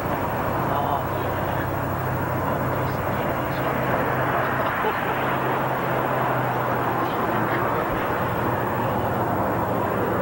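Car engine running with a steady low drone under an even rush of road and wind noise, heard from inside the car.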